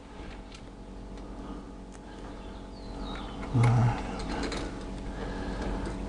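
Faint light clicks of hand tools working at a motorcycle battery's terminals, over a steady low background hum, with one short low grunt from a man's voice about three and a half seconds in.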